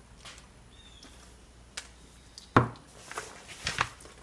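A few light clicks and knocks of handling on a wooden workbench as a smartphone is set down, the sharpest knock about two and a half seconds in, then a quick cluster of smaller taps.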